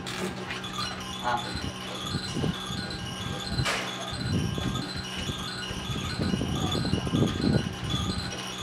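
Baby crib mobile playing a tinkling chime tune: a steady run of short, evenly spaced high notes. Voices murmur underneath, and a short click comes about three and a half seconds in.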